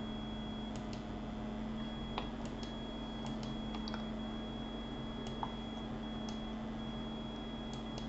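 About a dozen faint computer mouse clicks, scattered irregularly, over a steady low hum and a thin high whine.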